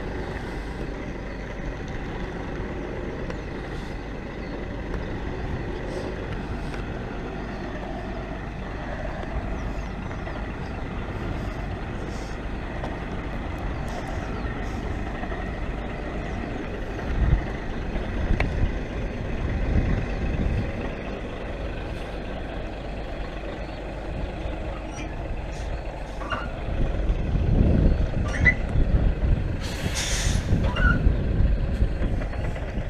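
Articulated lorry, a Scania tractor unit pulling a box semi-trailer, reversing slowly: the diesel engine runs steadily at low revs, with louder low rumbles about halfway through and again near the end, and a short hiss right at the end.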